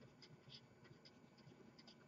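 Near silence, with faint scratching of a marker writing on paper.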